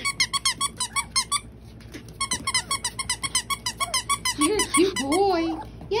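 Rubber squeaky dog toy squeezed by hand in rapid runs, about seven squeaks a second, with a short pause about two seconds in. Near the end a few lower, sliding vocal sounds join in.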